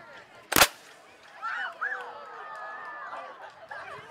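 Plastic bottle rocket released from a compressed-air launcher with one sharp pop about half a second in. Children's voices call out and chatter after it.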